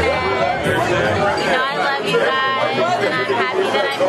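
Talking and chatter among people, with the low bass of background music that drops out about halfway.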